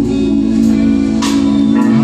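Live gospel quartet music with guitar, a long chord held steady until near the end.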